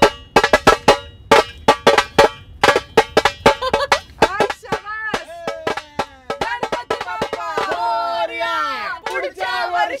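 A dhol drum beaten with sticks in a fast rhythm, several strokes a second. From about halfway through, voices with rising and falling pitch join over the drumming.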